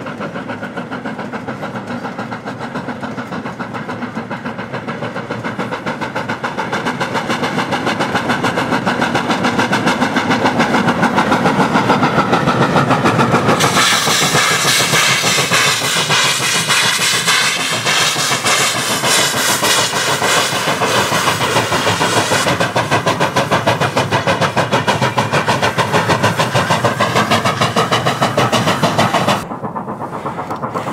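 Steam locomotive hauling a loaded coal train past, its exhaust beats coming fast and steady and growing louder as it approaches. About halfway through, a wavering high-pitched squeal sets in over the running train and lasts until nearly the end.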